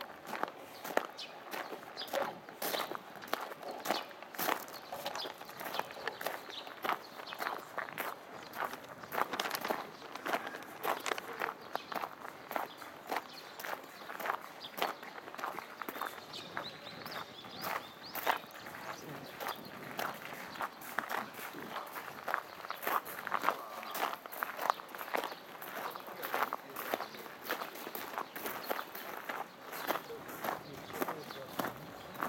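Footsteps crunching on loose gravel at a steady walking pace, one step after another.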